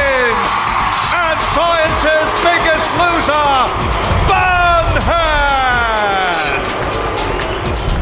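Background music under loud whooping and shouting voices, made up of many long calls that fall in pitch.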